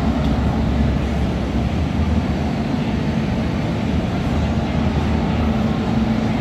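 Steady low rumble of outdoor city background noise, without distinct events.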